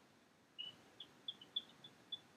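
Faint, short, high chirps, several in a row at a few per second, starting about half a second in: a small bird chirping.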